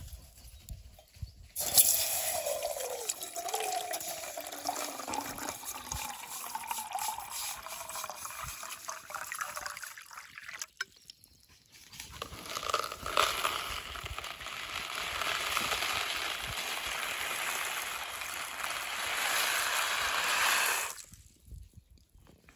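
Water poured from a plastic bottle into a metal camping pot, in two long pours: the first starts about two seconds in with a falling glugging tone, and the second starts after a short pause at about twelve seconds. The sound cuts off about a second before the end.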